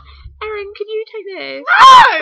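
A high-pitched voice making short cries, then a loud scream near the end that rises and falls in pitch.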